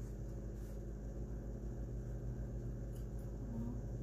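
Steady low hum in the room, with faint light scratches of a pencil marking the painted wooden tabletop.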